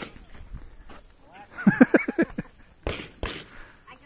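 A person's voice in a quick run of short pitched syllables about halfway through, followed by two sharp cracks a third of a second apart.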